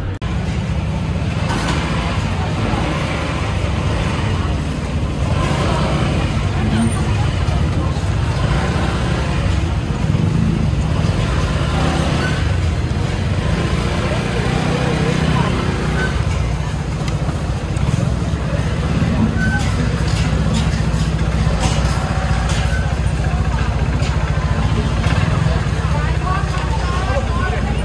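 Busy street ambience: many people talking at once over a steady low rumble of road traffic and engines, with a few sharp clicks or clatters after about twenty seconds.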